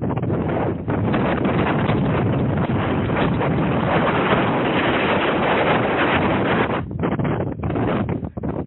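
Wind buffeting the microphone, a loud, steady rush of noise that dips briefly about seven seconds in.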